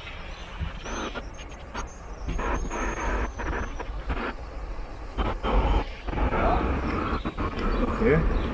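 Outdoor street ambience: a steady low rumble like passing traffic, with brief voices of passers-by.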